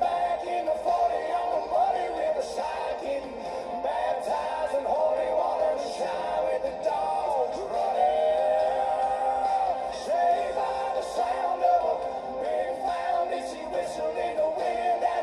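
A country song performed live: a male lead singing over guitars, continuous throughout, with a long held note about eight seconds in.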